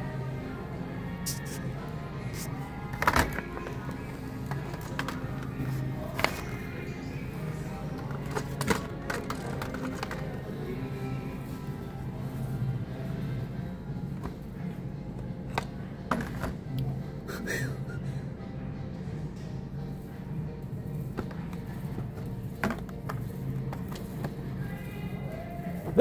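Background music playing over a store's sound system, with occasional sharp clicks and knocks of blister-packed diecast cars being handled and lifted off metal pegboard hooks.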